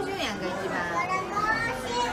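Children's voices, high-pitched chatter and calls with rising and falling pitch.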